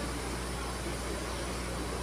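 Steady background hiss with a constant low hum underneath, even throughout, with no distinct events.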